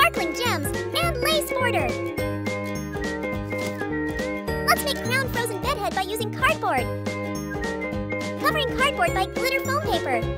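Upbeat background music for children, tinkling bell-like tones over a regularly stepping bass line, with bending, voice-like melodic glides at three points.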